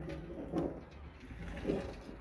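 Bunches of grapes being poured from a plastic bucket into the sheet-metal hopper of a grape crusher, heard faintly.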